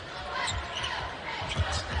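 Basketball dribbled on a hardwood arena court, a few low bounces heard over a steady crowd murmur.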